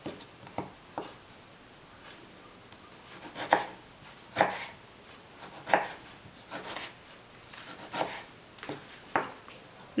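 Kitchen knife slicing through tomatoes and knocking on a wooden cutting board: separate, irregular cuts about one a second, with short pauses between them.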